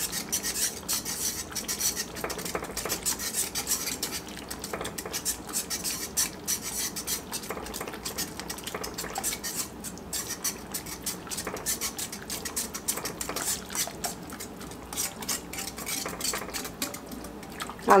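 A utensil stirring tomato soup in an enameled pan as cream is stirred in, with steady, irregular scraping and clicking against the pan.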